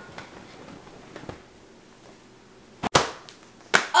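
Faint cloth rustling as a pair of leggings is shaken. About three seconds in comes a single sharp, whip-like crack, and a shorter snap follows just before the end.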